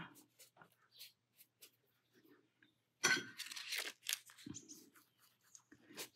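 Quiet handling sounds of watercolour painting: faint brush dabs on paper, then a short papery rustle about three seconds in as the card booklet of colour sheets is handled and turned.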